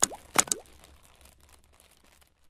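Logo-animation sound effect: two sharp clicks about half a second apart, each trailed by a quick rising tone, then a soft tail that fades out.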